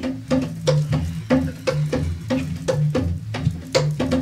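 A hand drum played in a steady beat of about three strokes a second, each stroke with a low ringing tone.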